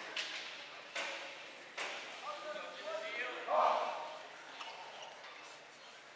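Voices calling out in an echoing gymnasium, with a loud shout about three and a half seconds in. Three sharp, echoing impacts come in the first two seconds.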